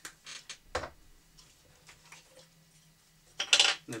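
Light clicks and knocks as a camera lens is handled and fitted onto a cinema camera body's lens mount, with one sharper knock about a second in. A short, louder hiss comes near the end.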